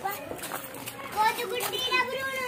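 Children's high-pitched voices talking and calling close by, louder in the second half.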